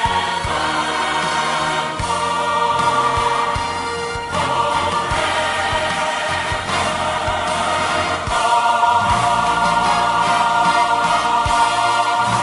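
Gospel music: a choir singing sustained, held chords over instrumental backing with a steady beat.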